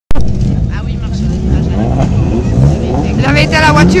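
Several autocross race-car engines running together, their pitch rising and falling with throttle blips.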